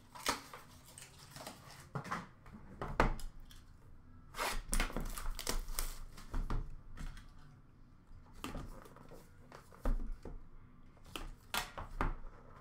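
Trading cards and a cardboard card box being handled on a counter: scattered clicks, taps and rustles, with a longer run of rustling about four and a half seconds in.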